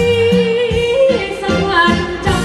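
A singer's voice over backing music in a Thai song, holding one long, slightly wavering note for about a second before moving on to shorter notes.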